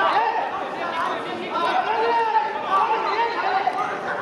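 Several voices calling and shouting over one another, as of soccer players talking across the pitch during play, with no single clear speaker.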